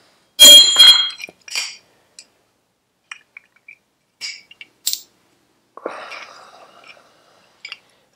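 Metal brake caliper parts clinking as they are set down on a hard surface. A loud ringing clink comes about half a second in, followed by a few light clicks and a short scrape near six seconds.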